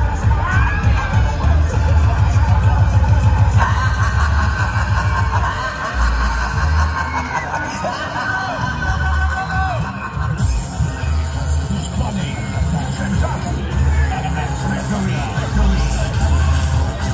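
Loud music with heavy pulsing bass playing over a fairground ride's sound system, with riders' shouts and screams mixed in.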